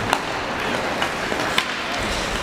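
Ice hockey sticks clacking sharply in a rink: two crisp clacks about a second and a half apart, with a fainter one between, over the steady hollow noise of the arena.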